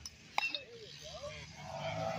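A single sharp click a little under half a second in, followed by faint distant children's voices.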